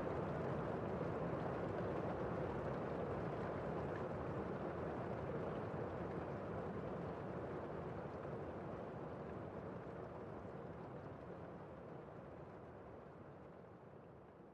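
Steady, even rushing background noise with no distinct events, slowly fading out toward the end.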